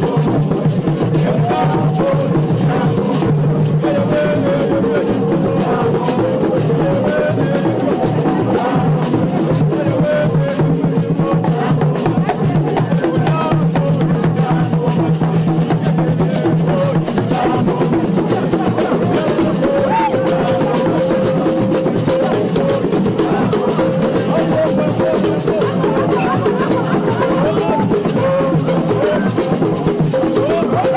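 Congolese traditional drum music: drums beating a fast, steady rhythm under group singing, played for dancers.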